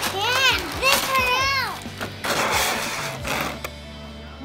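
A young child's wordless, sing-song vocalizing in two rising-and-falling phrases within the first two seconds, with rustling of plastic toy packaging as the playset pieces are handled.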